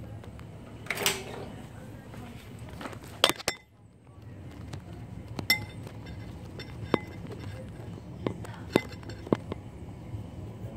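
Scattered light clinks and knocks of dishes being handled, about eight short sharp sounds a second or so apart.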